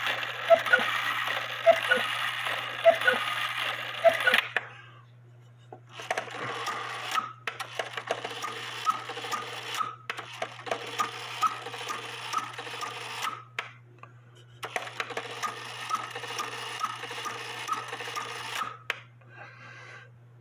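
Count-wheel cuckoo quail clock movement with its strike train running in three spells of whirring a few seconds each, separated by short pauses, with light regular clicks from the levers and wheels.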